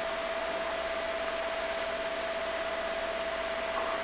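Steady in-flight cockpit noise of a Learjet: an even hiss with one constant mid-pitched tone running through it.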